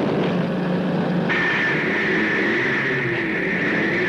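A car driving, heard from inside the cabin: a steady engine and road noise. About a second in, a steady high-pitched tone joins it and holds.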